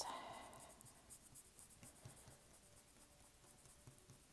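Faint, soft scratching of a paintbrush stroking acrylic paint onto paper.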